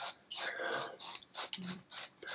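Two Bic Comfort Twin disposable twin-blade razors scraping over dry beard stubble with no shaving cream, in quick short strokes about four a second.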